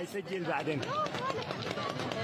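Phone-video soundtrack of a gunfight played back over a hall's loudspeakers: voices speaking over a noisy background with scattered sharp cracks of distant gunfire.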